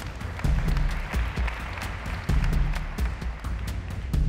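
Group applause and clapping over background music with a low beat about once a second.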